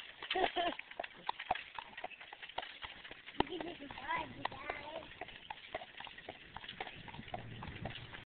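Horse's hooves clip-clopping as a horse-drawn carriage goes past, a steady run of sharp hoof strikes.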